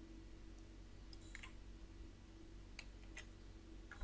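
A few faint clicks of a computer mouse, about a second in and again near three seconds, over a low steady room hum.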